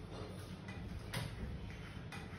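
Painter's spatula dabbing and scraping thick texture paint onto a wall in short scratchy strokes, about once a second and not quite regular, over a steady low hum.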